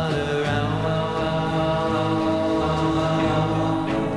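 Late-1960s psychedelic rock recording, the band holding long sustained notes in a droning, chant-like passage.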